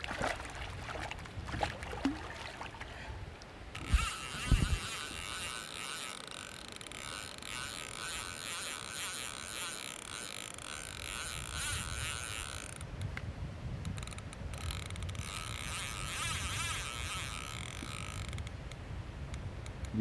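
A hooked sturgeon splashing at the surface, two dull thumps about four seconds in, then a Caperlan spinning reel's drag ticking rapidly and steadily as the fish pulls line off, in two long runs with a short break in between: the fish is running away from the landing net.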